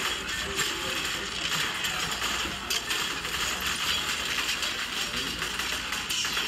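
Film soundtrack of a gunfight, heard off a TV: a dense, continuous clatter of rapid gunfire, debris and falling shell casings.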